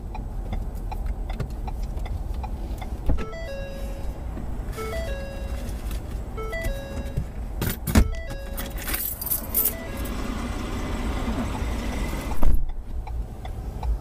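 Steady low rumble of the dashcam car sitting stopped with its engine running. From about three to eight seconds in, it is joined by short beeping tones at a few different pitches. A sharp knock comes about eight seconds in, and a louder burst of noise near the end.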